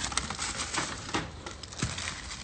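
Brown paper bag and tissue paper rustling and crinkling as a wrapped loaf of bread is pulled out of the bag, a run of small irregular crackles.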